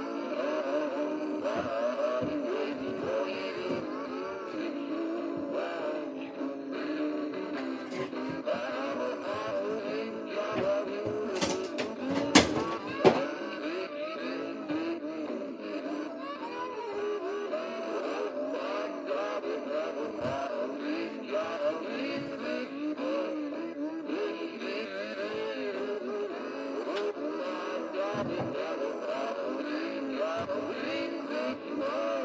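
Animated cowboy Santa figure singing and playing its song while dancing, running on low batteries. Two sharp clicks, less than a second apart, about halfway through.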